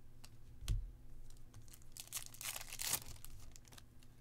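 A single knock on the table, then a crackly rustle of a foil card-pack wrapper being handled for about a second.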